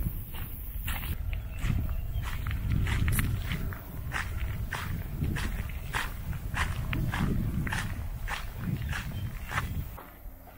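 Footsteps on a gravel path, about two steps a second, over a low rumble.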